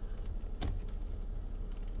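Low, steady background rumble with a single faint click a little over half a second in.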